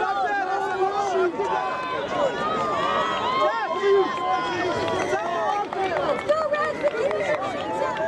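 Several people shouting and calling out over one another, with no clear words, throughout.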